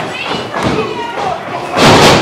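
Wrestlers' bodies crashing onto the ring mat as a dropkick lands: one loud, heavy thud near the end, with a short echo in the hall.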